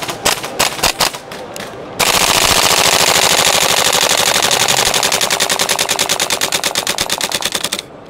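Gas blowback airsoft M4 rifle (MWS system) firing full auto in one long burst of about six seconds, the bolt cycling rapidly with sharp, even clacks, then stopping abruptly just before the end. A few separate sharp clicks come before the burst.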